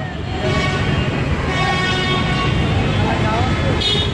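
Street traffic rumble with a vehicle horn held in one long steady note from about a second and a half in until just before the end.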